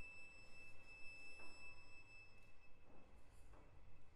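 Violin holding a very high, soft sustained note that fades out about two-thirds of the way in, with a few faint, widely spaced piano chords beneath: the last sounds of the music.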